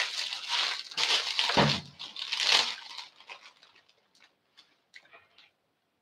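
Plastic salad bag of rocket leaves crinkling and crackling as it is handled, dense for the first three seconds and then thinning to a few faint crackles.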